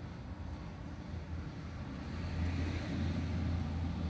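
A coin scraping the coating off a scratch-off lottery ticket: a soft, scratchy hiss that grows stronger about halfway through. A steady low hum runs underneath.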